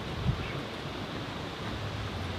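Steady wind noise on the microphone, with one short low thump just after the start.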